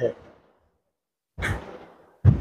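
A short whoosh sound effect about one and a half seconds in, fading quickly, after a last spoken word and a moment of silence.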